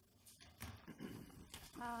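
Quiet room tone with a few faint, irregular handling noises. A woman's voice begins near the end.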